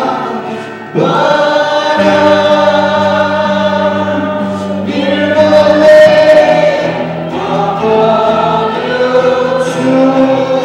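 Live worship band performing a Nepali praise song: a male lead singer and backing singers holding long sung lines over acoustic guitar and bass. The music dips briefly, and a new phrase comes in about a second in.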